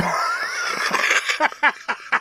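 Men laughing: first a long breathy laugh, then quick rhythmic ha-ha pulses, about five a second, from about one and a half seconds in.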